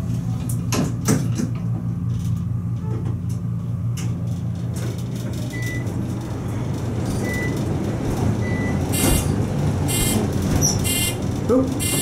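Inside a moving Otis high-rise elevator car: a steady low hum with travel noise building as the car runs. A few faint short beeps come in the second half, and a buzzing signal sounds in short bursts near the end as the car is taken over by fire-service recall.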